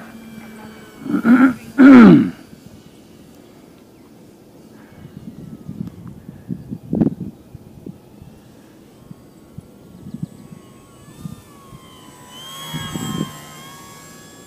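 A man coughs twice, loudly, about a second in, and gusty wind then bumps on the microphone. Near the end the electric motor and propeller of a Durafly Tundra RC plane whine, wavering in pitch as it flies low past.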